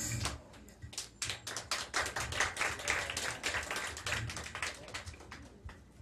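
Small audience clapping: a dense, irregular patter of hand claps that picks up about a second in and thins out near the end.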